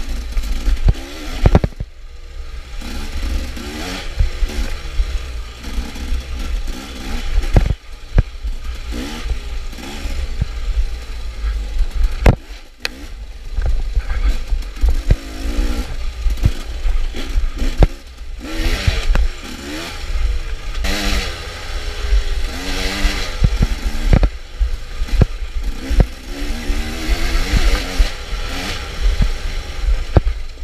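KTM dirt bike engine revving up and down again and again, its pitch rising and falling with the throttle over rough trail. Heavy low rumble and frequent sharp knocks and rattles from the bike jolting over bumps run through it.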